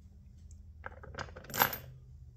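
A brass rifle case, freshly necked down from 6.5 Grendel to .22 ARC, being handled out of a reloading press: a few light metallic clicks, then one ringing brass clink about a second and a half in.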